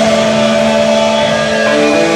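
Amplified electric guitar holding one sustained note that rings out between songs or sections, and a few single picked notes start near the end.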